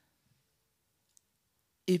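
Near silence in a pause in a woman's speech, broken by one faint, short click a little after a second in; her voice resumes near the end.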